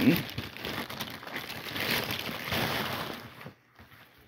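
A padded Priority Mail flat rate envelope crinkling and rustling as it is handled and opened, stopping about three and a half seconds in.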